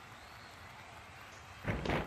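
Low steady hiss, then about a second and a half in a sudden loud thud: a wrestling-game impact sound effect as a dropkick lands.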